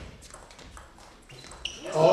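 A table tennis ball knocking off the bats and table in a rally, a few light clicks spaced unevenly, one with a short ping. Voices start up in the hall near the end.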